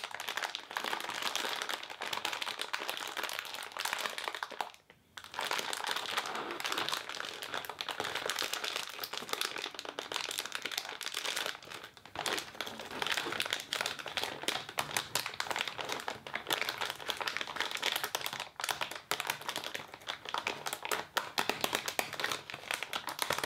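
Clear plastic wrapper around a pack of crepe paper crinkling as it is squeezed, turned and pulled open by hand: a dense, continuous crackle with a short pause about five seconds in and a brief lull around twelve seconds.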